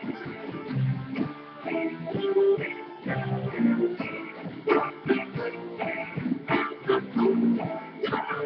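Instrumental passage of a song: strummed and plucked guitar, with a steady run of note attacks and no singing.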